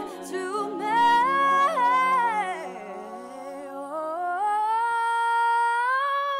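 A cappella singing by an all-female group: a solo female voice sings a wordless run that climbs and dips over a sustained hummed chord from the backing voices. About three-quarters of the way through the backing voices stop, leaving the soloist alone on a long, high held note.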